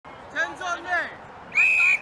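A referee's whistle blown in one short, steady, shrill blast of about half a second, starting about one and a half seconds in.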